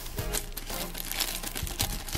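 A thin clear plastic bag of toy accessories crinkling as it is handled and pulled open, in irregular crackles, over quiet background music.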